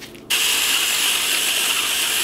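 Battery-powered electric seasoning grinder running, grinding seasoning onto pork chops. It starts abruptly about a third of a second in and runs steadily.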